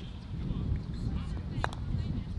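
Wind rumbling on the microphone, with a single sharp click of a croquet mallet striking a ball about one and a half seconds in.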